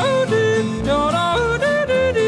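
A country gospel song with yodeling: a singer's voice flips rapidly between high and low notes over instrumental backing.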